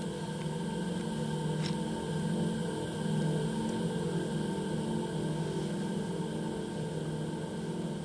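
Low, steady ambient drone of layered sustained tones, swelling slightly now and then: the title music of an installation's documentation film.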